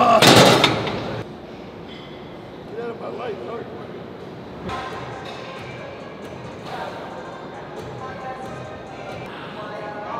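A man's loud yell, about a second long, at the very start. After it comes quieter background music with some faint voices.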